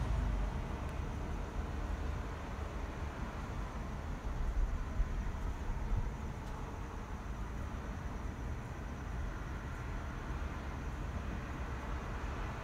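Steady low background rumble with a faint hiss, unchanging and without any distinct events.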